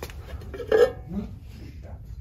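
A ceramic hen-shaped piece is lifted off a ceramic plate with light clinks of ceramic on ceramic. There is a short vocal 'hm' sound just under a second in.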